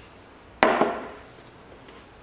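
A cereal bowl with a spoon in it set down on a coffee table: one sharp knock a little over half a second in, with a smaller clink just after.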